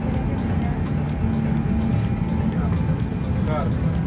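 Steady low drone of an airliner cabin, with music underneath.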